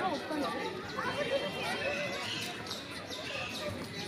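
Indistinct voices of people talking, too unclear to make out words.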